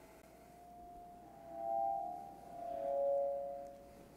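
Public-address feedback: the preacher's lapel microphone ringing through the church loudspeakers as a few steady mid-pitched tones that swell up twice and die away. It is a feedback loop from the microphone being carried out in front of the PA speakers.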